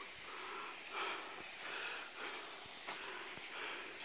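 Quiet outdoor forest ambience with soft, irregular swells of noise and a few faint clicks close to the microphone.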